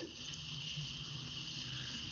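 Faint room tone: a steady high-pitched whine and a low hum, with no distinct knocks or handling sounds.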